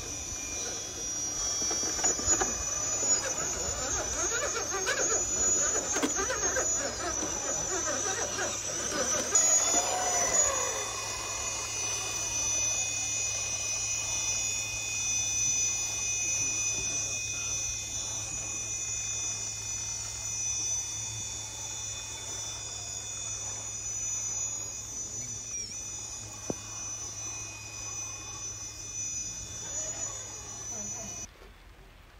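Radio-controlled rock crawler's electric motor and drivetrain whining with steady high-pitched tones as the truck climbs steep rock, busier for the first ten seconds or so and quieter after.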